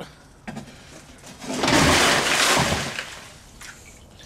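A plastic tub of rainwater tipped over, its water gushing out onto the ground for about a second and a half before dying away.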